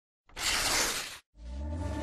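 Glass-shattering sound effect, a burst of crashing noise lasting about a second. After a brief silence, electronic music begins with a low drone.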